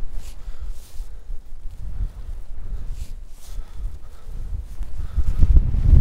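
Wind buffeting the camera microphone, a gusting low rumble that swells into a stronger gust near the end.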